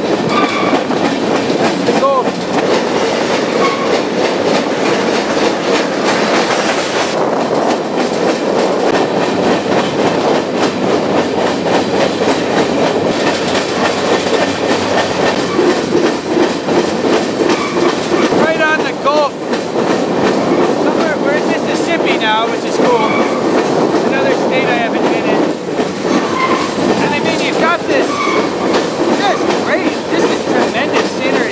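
Freight train rolling along, heard from aboard a car: a steady rumble and clatter of wheels on rail, with several short high wheel squeals in the second half.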